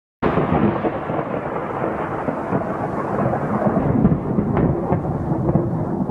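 Thunder sound effect: a long rolling rumble of thunder that starts suddenly a moment in and goes on without letting up.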